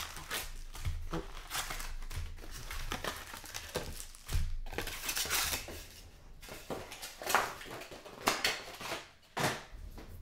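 Foil packs of Topps Mini Chrome football cards and their cardboard hobby box being handled: the box is torn open and the packs are pulled out and set down. It comes as a run of irregular crinkles and rustles, with a few sharper snaps in the second half.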